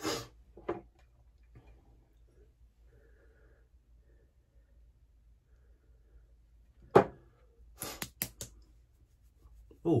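Small clicks and taps from handling a container of Mennen shave talc: one sharp click about seven seconds in, then a quick run of clicks and knocks a second later, with quiet handling noise in between.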